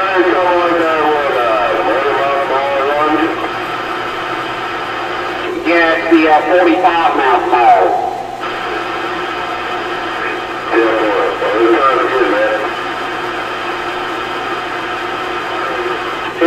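Voices of other CB stations heard through a Kraco CB base radio's speaker: three stretches of talk with steady radio hiss between them.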